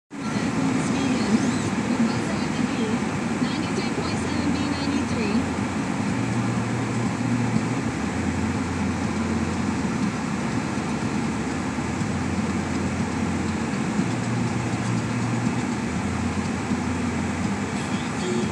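Steady engine and tyre rumble of a car driving down a road, heard from inside the cabin.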